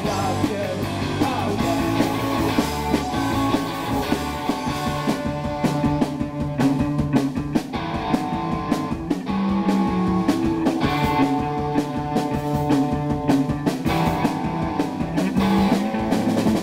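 Live rock band playing: electric guitar and bass guitar over a drum kit keeping a steady beat.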